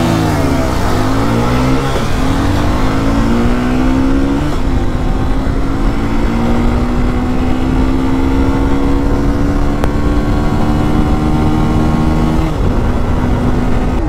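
Honda Shine 125's air-cooled single-cylinder engine accelerating hard through the gears, under wind rushing past the microphone. Its pitch climbs, drops at an upshift about four seconds in, climbs slowly for several seconds, and drops again near the end.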